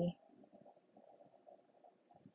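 A woman's voice trails off right at the start, then near silence with only a faint, irregular low rustle.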